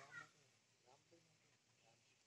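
Young Indian palm squirrel giving a faint, brief high squeak right at the start, with a couple of fainter calls after it.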